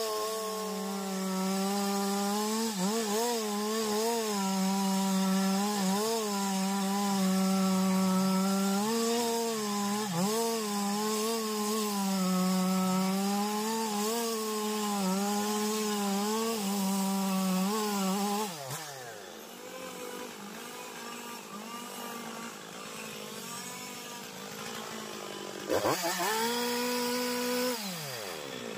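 Two-stroke chainsaw cutting into the trunk of a large anjili (wild jack) tree. The engine is held at high revs, its pitch dipping again and again as the chain bites into the wood. About eighteen seconds in it falls back to a quieter idle, then is briefly revved near the end.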